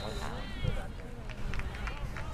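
Faint, overlapping voices of spectators on a soccer sideline, over a low steady rumble.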